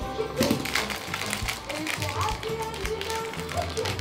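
A quick, uneven series of light taps and clicks on a hard surface, over soft background music.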